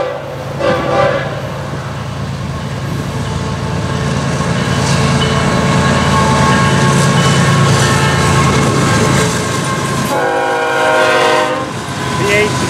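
Diesel locomotives of a freight train, led by a GE ES44C4, passing close with the engines running loud. A short air-horn blast sounds about a second in, and a longer blast near the end.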